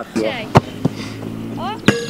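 A football being struck: sharp thuds, one about half a second in and a louder one near the end, amid short shouts from the players.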